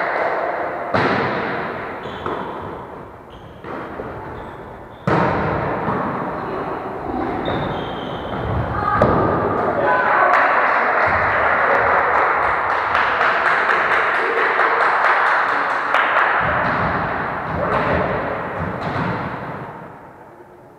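Volleyball in play in a sports hall: sharp thuds of the ball being struck, a couple of them standing out about a second and five seconds in, with players' voices running under and between the hits.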